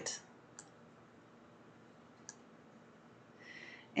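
Near silence broken by two faint clicks, one just over half a second in and one a little past two seconds, then a short breath in near the end.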